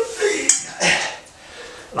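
A bowl clattering as it is picked up from a bathtub, with a sharp knock about half a second in and a second one shortly after.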